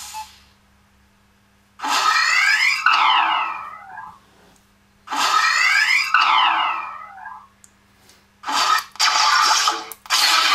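Darth Vader respirator breathing sound effect played through the chestbox controller's small speaker: two long hissing breaths with a sweeping tone, about three seconds apart, and a shorter one starting near the end. A steady low hum runs underneath.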